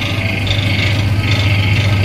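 Electric motor running a belt-driven piston sprayer pump: a loud, steady low hum with a hiss above it, as the pump forces fungicide solution out through the spray hoses.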